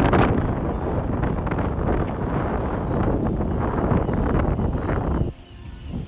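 Wind buffeting the phone's microphone outdoors, a loud rough noise that cuts off suddenly about five seconds in. Faint background music follows it.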